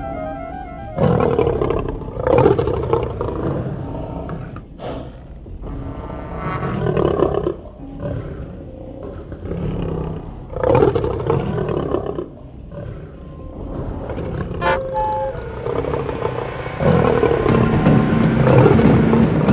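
Several roars from a large animated creature, each about a second long, over a music score.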